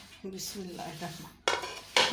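A dish clatters about one and a half seconds in: a bowl of kofta batter is moved and knocked on the counter. A faint stir or scrape comes before it.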